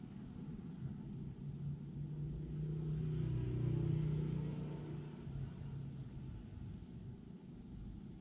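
A vehicle passing out of sight: a low engine hum and rumble swells to a peak about four seconds in, then fades away.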